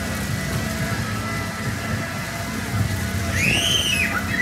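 Fairground chair-swing ride running: a steady low rumble with faint fairground music in the background. Near the end a single high squeal rises and falls.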